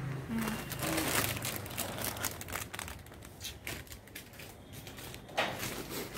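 Irregular crinkling and rustling of plastic packaging, with scattered small clicks, as wrapped Christmas decorations are handled.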